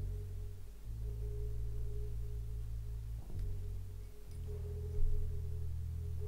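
Background music of soft, sustained low tones with a faint held higher note, the chord shifting a few times.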